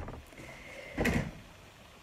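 A short rustling scrape about a second in as a cloth towel is picked up and handled.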